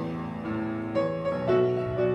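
Piano playing a slow tune, a new note or chord about every half second.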